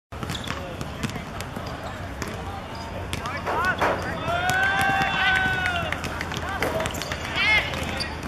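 Shouting voices on a football pitch, with a short rising-and-falling call, then one long drawn-out shout in the middle and another short call near the end. Scattered dull thuds of a football being kicked.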